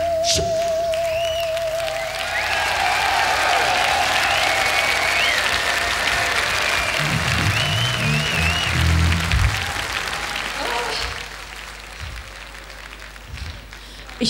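A held vibrato note ends just after the start. Then a large concert crowd applauds, cheers and whistles, with a few low thuds around the middle, and the noise dies down over the last few seconds.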